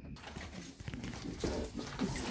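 Rustling and light clattering of nylon holsters, straps and plastic prop guns being handled and pulled from a crowded rack. It starts abruptly just after the beginning, as a dense rustle with small scattered knocks.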